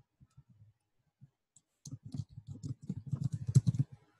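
Typing on a computer keyboard: a few scattered keystrokes, then a quick run of keystrokes for about two seconds in the second half as a short phrase is typed.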